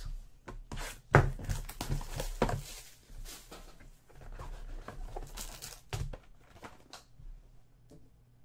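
Trading cards and a foil card pack being handled on a tabletop: an irregular run of clicks, taps and crinkly rustling, with two sharper knocks about a second in and near six seconds.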